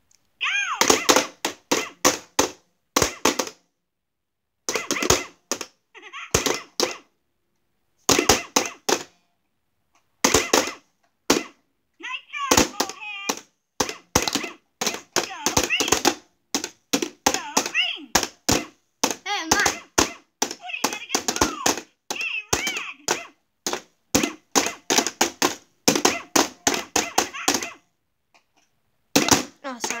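Plastic toy mallets tapping the pop-up moles of a light-up whack-a-mole game, in quick runs of taps with short pauses between.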